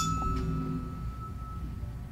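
A metal tuning fork, just struck, rings with one steady high tone that fades away over nearly two seconds; a few lower overtones die out in the first half-second. It is held beside the ear to compare hearing side to side.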